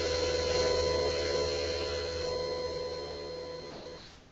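A steady electronic hum and hiss with several held tones, slowly fading and then cutting off suddenly at the end as the broadcast feed switches over.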